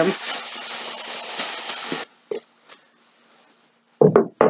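Thin plastic shopping bag rustling and crinkling as a hand rummages inside it, stopping abruptly about halfway through, followed by two brief soft rustles.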